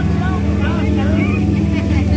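Tour boat's motor running with a steady low hum, with voices talking over it.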